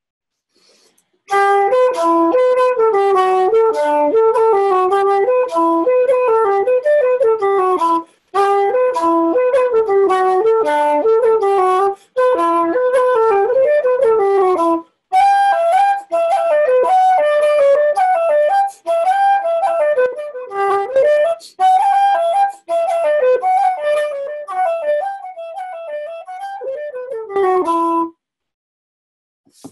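Wooden Irish flute playing a slip jig in 9/8 time, the open type with many long held notes rather than a steady run of short ones. The tune starts about a second in and goes on with a few brief breaks.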